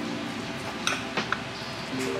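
A metal spoon scraping and clinking against a ceramic ramekin while mixing salmon and rice, with a few light clicks around the middle.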